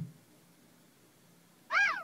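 Near silence with a brief low thump at the start, then near the end a single short, high animal-like call that rises and then falls in pitch.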